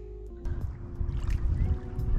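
Background music with steady held notes. About half a second in, a low, uneven rumble of lake water lapping close to the microphone joins it and becomes the loudest sound.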